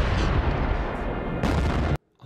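Explosion sound effect from an anime fight scene: a loud, dense rumbling blast with a heavy low end that stops abruptly.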